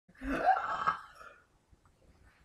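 A young woman letting out one loud, long burp of about a second.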